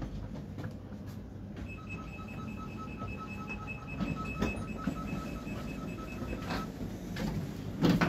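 Train door signal beeping rapidly, about five beeps a second for some four seconds, as the doors are released at the station stop, over the low hum of the stopped train. A loud thump comes near the end as passengers step out through the door.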